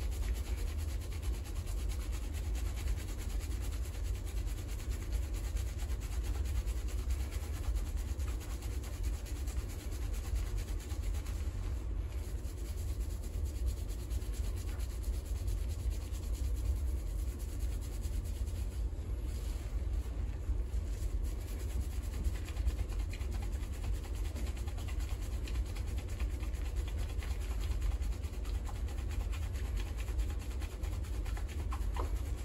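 Fingers vigorously scrubbing shampoo lather into wet hair and scalp, a continuous fast rubbing of hands through the foam, with a steady low rumble underneath.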